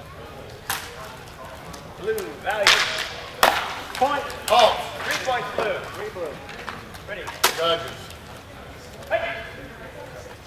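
Nylon longsword blades striking each other in a sparring exchange: several sharp clacks about a second in, in a cluster between two and five seconds, and again about seven and a half seconds in, with brief voices calling out between the strikes.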